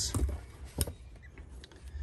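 Hand tools being handled in a canvas tool bag: light rustling with a few small clicks, the sharpest a little under a second in.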